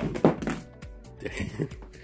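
A phone in a thick plastic case pops off a magnetic car mount and lands with a single sharp thunk about a quarter second in, over steady background music.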